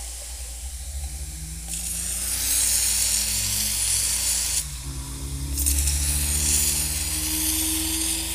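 Can of compressed air duster sprayed into a glass of water to freeze it, in two long hissing blasts: one starting about two seconds in, and a second after a brief pause, at about five and a half seconds.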